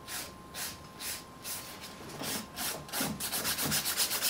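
A 180/180-grit hand nail file rasping back and forth over an acrylic nail, about two strokes a second, then a run of quick short strokes near the end as the file works around the cuticle.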